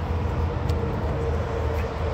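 An engine running steadily at idle: a low, even rumble with a constant hum over it. Two faint clicks, about a second apart, come from footsteps over dry leaves.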